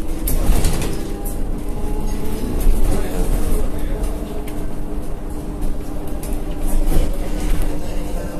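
Inside a moving city bus: the steady drone of the bus's drivetrain over a deep road rumble, with occasional clicks and rattles from the cabin.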